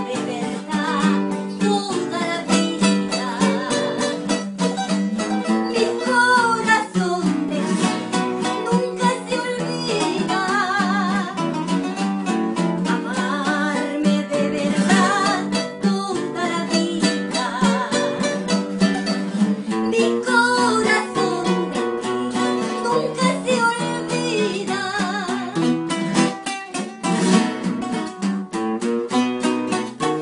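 Three acoustic guitars strumming and plucking a pasillo together, with a singer's voice carrying the melody with vibrato over them.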